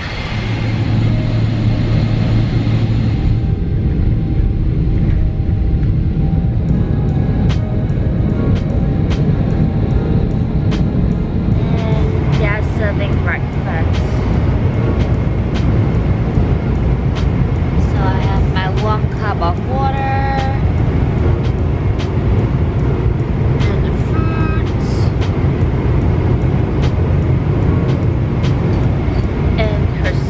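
Steady low rumble of an airliner cabin, jet engines and air flow, with a few brief faint pitched snatches of sound over it.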